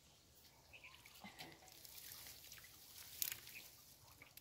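Faint wet dripping and sloshing of shallow muddy water as hands grope along a ditch bank, with scattered small clicks and one sharper click about three seconds in.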